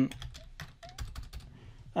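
Keystrokes on a computer keyboard: a quick, uneven run of separate clicks as a terminal command is typed.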